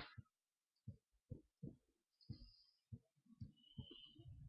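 Near silence, broken by a few faint, short, low thumps at irregular intervals.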